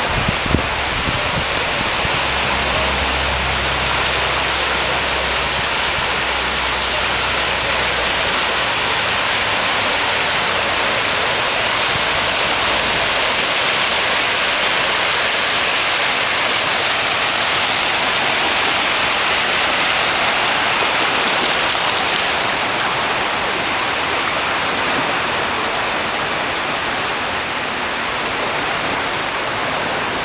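Small waves washing in over sand in shallow water at the shoreline, giving a steady hiss of surf, with a low rumble underneath that fades out about halfway through.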